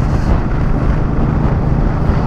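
Royal Enfield Meteor 350 single-cylinder motorcycle engine running steadily at road speed, with heavy wind rush on the microphone.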